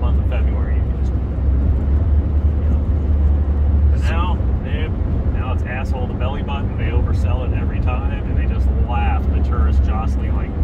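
Steady low road and tyre rumble inside a Toyota Prius cabin at highway speed, around 80 mph. From about four seconds in, a voice talks over it.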